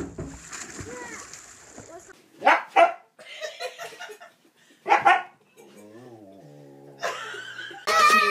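Husky barking: two loud, short barks about two and a half seconds apart, with softer vocal sounds between them.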